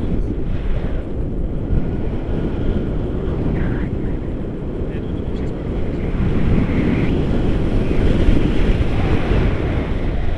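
Wind rushing over a camera microphone during a tandem paraglider flight: a loud, steady buffeting rush that grows a little stronger in the second half.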